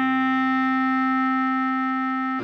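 A clarinet holding one long, steady low note, written D4, over a sustained C minor chord on a keyboard.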